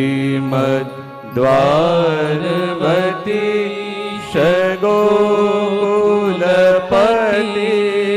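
A man's voice chanting a devotional hymn in long, melodic held notes with sliding ornaments. The phrases are broken by brief pauses for breath about a second in, around four seconds and near seven seconds.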